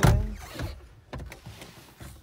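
Car door lock and handle being worked from inside the cabin: a heavy clunk right at the start, then a few lighter clicks and knocks.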